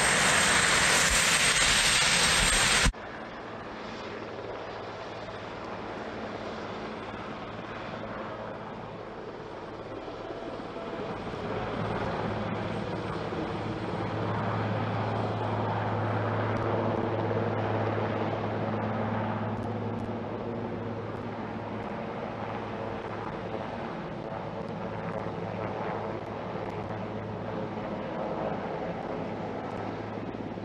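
Helicopter turbine engines and rotor: a loud, dense noise with a steady high whine close up for the first three seconds, then, after a sudden cut, the helicopter heard from a distance as a low, steady rotor drone that grows louder about ten seconds in as it comes in to land.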